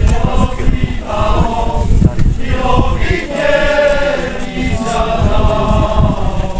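A group of voices singing a folk song together, heard from within the crowd, over a low rumble on the microphone.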